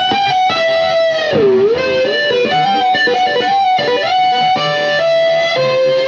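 Jackson Pro Series SL2Q electric guitar with DiMarzio Evolution humbuckers, played through a Hughes & Kettner GrandMeister amp: a slow lead melody of single sustained notes with vibrato. About a second and a half in, one note dips down in pitch and comes back up.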